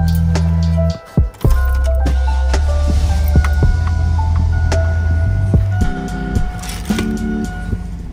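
Background music with a heavy bass line and a drum beat; the bass drops out briefly about a second in.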